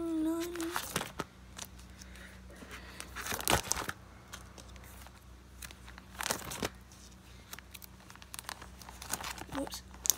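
Clear plastic binder pocket pages crinkling as they are flipped over, three page turns a few seconds apart.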